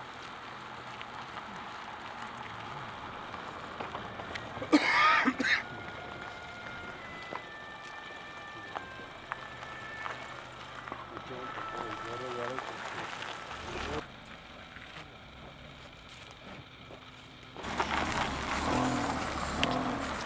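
Indistinct men's voices talking outdoors, with a loud, brief burst of sound about five seconds in and louder talk near the end.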